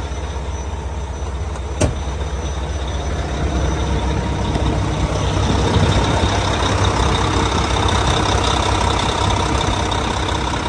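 Mack MP8 inline-six diesel truck engine idling with a steady low rumble that grows louder over the first half. There is a single sharp click about two seconds in.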